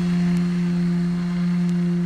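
Concrete vibrator running with a steady, even hum while consolidating grout in the block cells.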